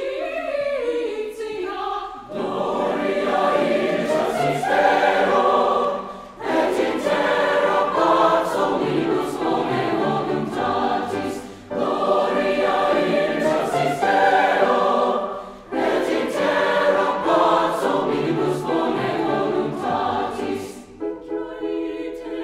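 Mixed choir singing in a concert hall. A lone voice with vibrato leads off, the full choir comes in about two seconds in, and it sings in long phrases with short breaks between them.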